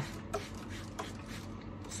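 Two short squirts from a hand trigger spray bottle wetting potting soil, about two thirds of a second apart, the first louder.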